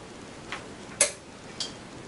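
Teeter EP-560 inversion table's frame clicking as its bed is swung up to fold the table: three short clicks about half a second apart, the loudest about a second in.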